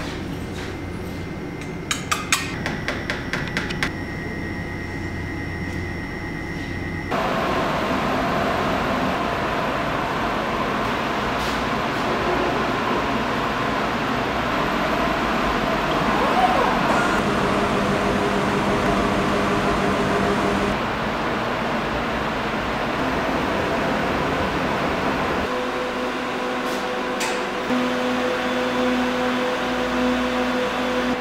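A quick run of light taps about two seconds in over a low steady hum, then, after a cut, the louder steady running hum of an automated laboratory sample-processing instrument, with a few faint steady tones.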